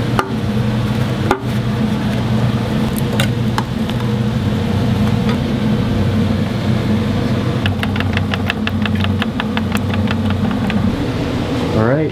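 A steady machine motor hum runs throughout, with a few sharp clicks. Near the end comes a quick run of even ticks, about six a second.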